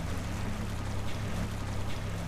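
Dinghy's outboard motor running at a steady speed, a low even drone, with water rushing and splashing past the hull.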